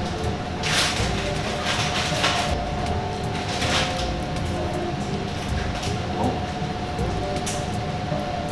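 A steady hum with one constant tone over a low rumble, broken by short hissing rustles about one, two and four seconds in.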